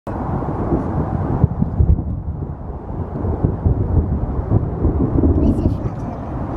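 Thunder rumbling: a low, continuous, uneven roll with no sharp crack.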